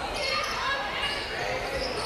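A basketball being dribbled on a hardwood court in a large, echoing gym, over a low murmur from the hall.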